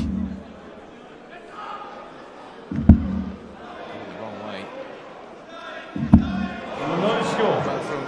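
Three steel-tip darts striking a bristle dartboard about three seconds apart, each a short sharp thud. A crowd murmur rises after the third dart.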